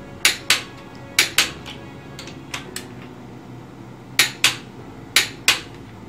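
Torque wrench clicking as the connecting-rod cap bolts are brought to their set torque: four pairs of sharp metallic clicks, with two fainter clicks between them.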